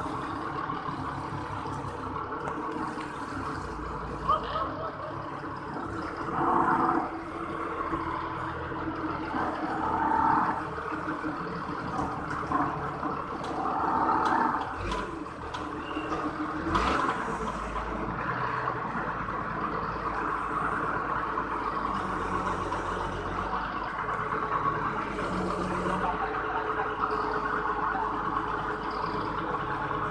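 Two forklift engines running steadily while they work, with a few sharp knocks about halfway through.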